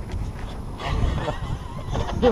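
Wind rumbling on the microphone, with a short, high, voice-like call rising and falling in pitch from about a second in.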